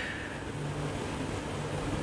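Low, steady background rumble with a faint hum.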